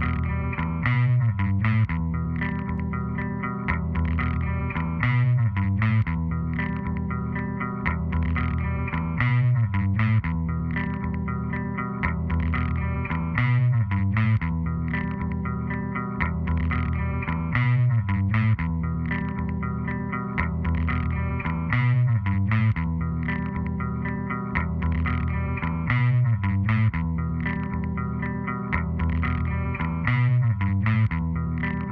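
Instrumental background music led by a guitar with effects, its phrase repeating about every four seconds at a steady level.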